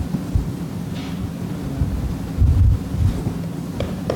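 A steady low electrical hum on the room's sound feed, broken by several dull low thumps or rumbles on the microphone, the loudest about two and a half seconds in.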